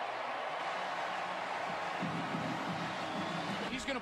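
Large stadium crowd cheering and clapping after a touchdown, a steady wash of many voices.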